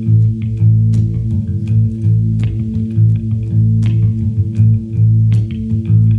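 Live band playing the instrumental introduction of a song: electric guitars over a sustained bass line, with a steady pulse of sharp attacks about every 0.7 seconds.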